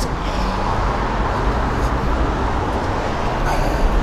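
Steady road traffic noise: a low rumble under an even hiss, holding level with no single vehicle passing.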